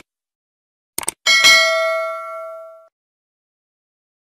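Subscribe-button animation sound effect: two quick clicks about a second in, then a bell ding that rings out and fades over about a second and a half.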